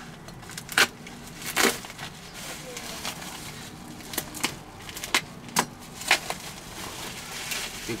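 Plastic bubble wrap being cut and pulled open around a long wrapped object, crinkling with irregular sharp crackles every second or so.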